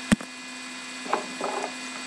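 Handling noise from a camera being picked up and carried: one sharp knock just after the start, then a few faint clicks and rubs, over a steady electrical hum.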